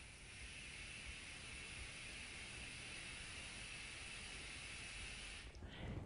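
A long, steady exhale blown through a loosely closed fist held to the lips: a faint, even hiss of air that stops about five and a half seconds in. It is a controlled breath out against light resistance, as in a breath-support exercise for singing.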